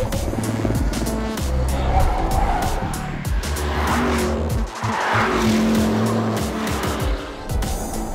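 Porsche Panamera Turbo's twin-turbo V8 running hard at racing speed, mixed with background music, with a louder noisy swell about four to five seconds in.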